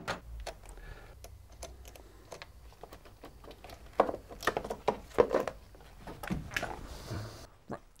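A steel tool-chest drawer rolls shut, then hand tools clink and knock on metal in scattered sharp clicks as a car battery's terminal clamps and hold-down are undone with a 10 mm spanner and socket. The knocks are loudest a few seconds in.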